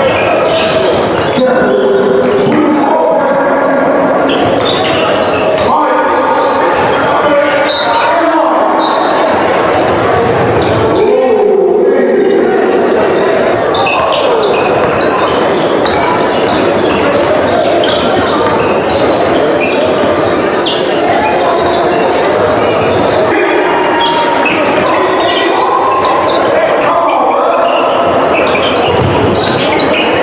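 Live game sound in a large echoing gym: a basketball bouncing on the hardwood court, amid the voices of players and spectators.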